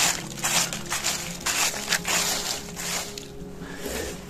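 A wooden stick raking and poking through fallen oak and beech leaves, making quick repeated rustles of about two strokes a second that die away about three seconds in.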